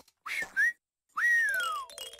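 Cartoon whistling: two short whistled glides, a moment of silence, then one long whistle falling steadily in pitch.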